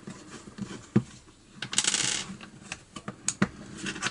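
Plastic control handle of an Echo SRM-22GES string trimmer being prised apart by hand: a few small clicks and a short, bright rattling clatter of hard small parts about two seconds in.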